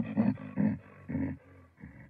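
A creature growling in a cartoon sound effect: a run of low, rough, broken growls. They are loudest at first and trail off weaker before stopping near the end.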